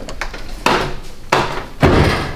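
Three sharp knocks, about two-thirds of a second apart, each ringing briefly.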